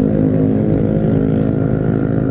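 Kawasaki W175's air-cooled, carbureted single-cylinder engine running at a steady cruise, heard from the rider's seat while riding.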